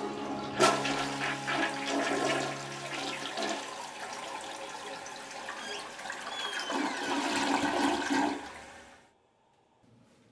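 Toilet being flushed: a sharp click of the tank handle about half a second in, then rushing water through the bowl that surges again near the end before tapering off.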